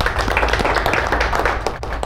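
Applause: many hands clapping steadily, easing off slightly near the end.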